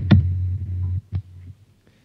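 Low steady hum with a few sharp clicks over an internet call line as a dropped caller reconnects; it cuts off about a second in.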